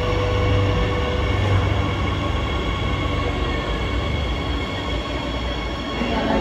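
Madrid Metro train moving along an underground station platform: a steady rumble of motors and wheels, with a faint whine that fades out about a second and a half in.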